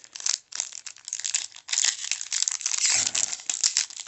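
Foil trading-card pack wrapper crinkling and crackling as it is handled and torn open by hand, growing louder a little under halfway through.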